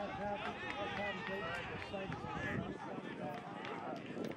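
Several voices shouting and calling out at once from rugby players and sideline spectators, overlapping so that no single word stands out.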